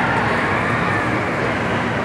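Steady mechanical running noise of a Gerstlauer Sky Flyer ride in motion, its turtle-shell gondolas swinging and spinning, under the general hubbub of a large indoor hall.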